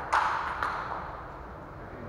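Table tennis ball hits: about three sharp, echoing clicks of the ball on bats and table in the first second, then the rally stops and the sound fades.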